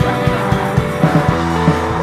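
Rock band recording: sustained distorted electric guitar chords over bass, with regular drum hits.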